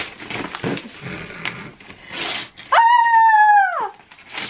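Paper gift bags and tissue paper rustling as a present is unwrapped, then a young woman's high-pitched excited squeal lasting about a second, held and then sliding down in pitch at the end.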